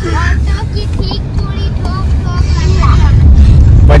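Steady low rumble of a car on the move, heard from inside the cabin, growing a little louder near the end, with soft voices of passengers over it.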